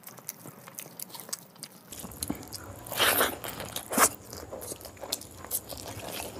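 A person chewing a mouthful of rice and boiled quail eggs, with repeated wet mouth clicks. There is a louder burst of chewing noise about three seconds in and another sharp smack about a second later.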